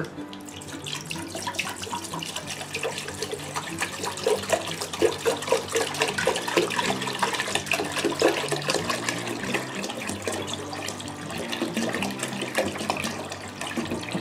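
A gallon of water poured from a plastic jug into a stainless steel pot, splashing steadily as the pot fills.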